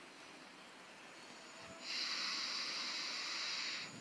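A reciter's long in-breath into a close microphone: faint room tone, then a steady hiss starting about two seconds in and lasting about two seconds, taken in the pause between chanted phrases of Quran recitation.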